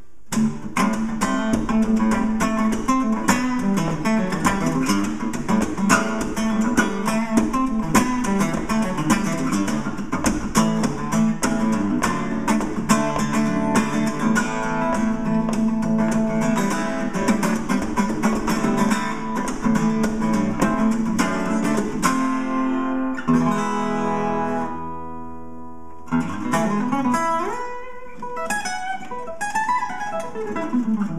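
Cuntz Oveng Custom 34-fret steel-string acoustic guitar played solo. For about twenty seconds it is strummed fast and rhythmically, then a chord is left ringing and fading, and near the end it is picked in single-note runs.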